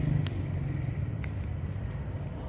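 Low, steady motor vehicle engine rumble that slowly fades, with a couple of faint clicks.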